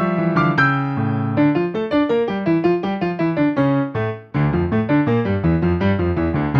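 Yamaha digital piano played solo: quick running notes over a moving bass line, breaking off for a moment about four seconds in before a new phrase enters with heavier low notes.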